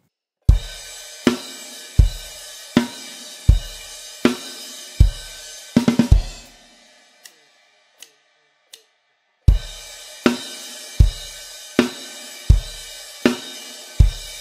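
Drum kit playing a simple rock groove, with a crash cymbal and bass drum struck together on every beat, about four beats every three seconds, and a quick three-note fill closing the second bar. The cymbal rings off, three faint ticks follow in time, and the groove starts again a few seconds later.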